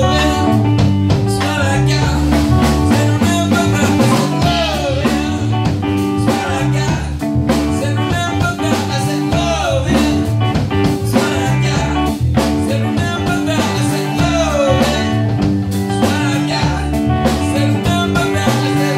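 Live rock band playing a song: lead vocals over distorted electric guitars and a drum kit, with a steady beat.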